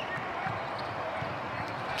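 Basketball being dribbled on a hardwood court in a fast break, over steady background noise.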